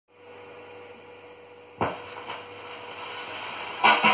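Amplified mains hum from the turntable and mixer, then the stylus of an XL-120 turntable dropping onto a spinning 7-inch vinyl single with a sharp thump a little under two seconds in, followed by a rising record-surface hiss with faint crackles. The record's music comes in just before the end.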